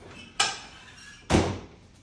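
Hospital bed side rail being lowered: two clunks about a second apart, the second deeper and louder.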